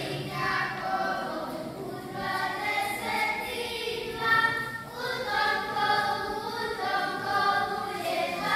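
Group of children singing a Croatian Posavina folk song together in one voice as they dance in a ring.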